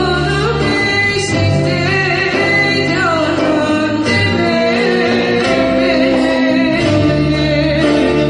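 A solo voice sings a slow song through a microphone, over continuous instrumental accompaniment. The voice wavers in pitch on its held notes.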